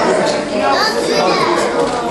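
Many people talking at once, with children's voices among them: the chatter of a congregation milling about.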